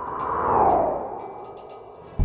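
A whoosh transition sound effect that swells and slides down in pitch, loudest about half a second in and fading after, with faint background music underneath.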